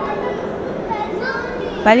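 Indistinct chatter of shoppers in a large indoor hall, with a child's voice heard faintly among it.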